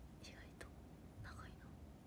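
Near silence with a young woman's faint whispering close to the microphone. A single short click comes about half a second in.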